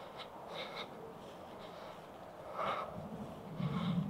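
Faint footsteps swishing through long grass at a walking pace, with soft breathing.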